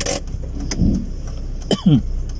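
Low steady hum of a car's engine idling, heard from inside the cabin. There is a short rustle at the start and a brief vocal sound near the end.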